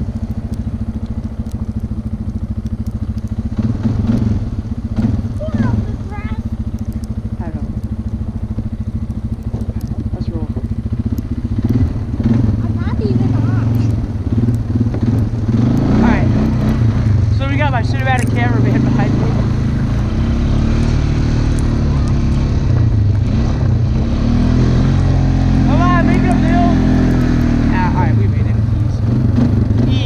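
An ATV engine running hard as it is ridden over snow, its pitch rising and falling as the throttle is worked. There are quick revs around the middle and again near the end, and it runs louder in the second half.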